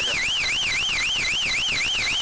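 Electronic warbling tone sweeping up and down about four times a second, over the steady drone of the cockpit. It sounds as the trigger is pulled on a target held in the gunsight, the simulated firing of a mock dogfight.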